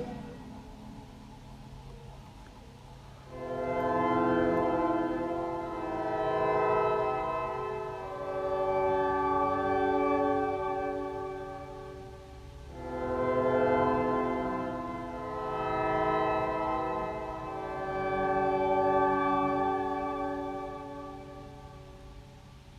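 Instrumental music: slow, sustained chords that swell and fade in long breaths of about two to three seconds each. They come in about three seconds in, after a near-quiet start, and dip briefly near the middle.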